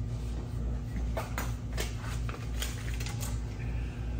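A few short, sharp clicks and light knocks from hands working over a wooden board on a workbench, bunched in the middle seconds, over a steady low hum.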